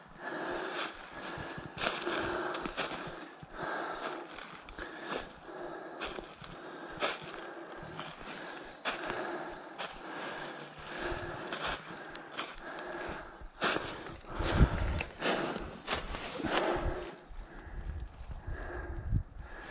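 Footsteps crunching and swishing through deep dry beech-leaf litter at an even walking pace, about one step a second. Some heavier low bumps come about three-quarters of the way through.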